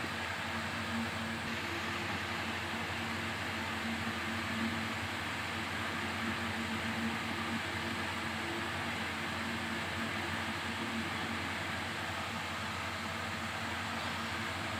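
Steady background noise, an even hiss with a faint low hum, holding at the same level throughout.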